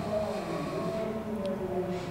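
A man's drawn-out, low hesitation hum between words, its pitch sinking slowly, over faint room noise.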